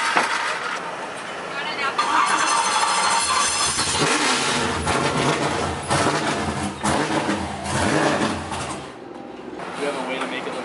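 A drift car's LS V8 engine being cranked over and started, then running with a heavy low rumble that drops away shortly before the end, with people talking around it.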